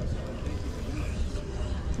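Steady low rumble of outdoor city background, mostly distant road traffic.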